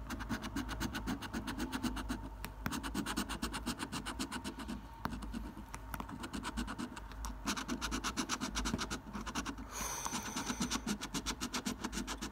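A coin scratching the coating off a scratchcard in quick, repeated strokes, several runs of scraping with short pauses between them.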